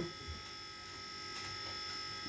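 Quiet room tone with a faint, steady, high-pitched electrical whine.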